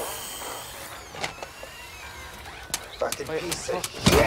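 High electric motor whine from a four-legged robot's actuators, first as steady high tones, then as a whine that glides up and falls away, with a couple of sharp mechanical clicks.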